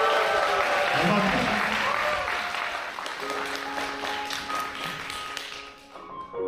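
Concert-hall audience applauding after a classical vocal ensemble song, the clapping gradually dying away. About halfway through, soft sustained piano notes come in beneath the fading applause.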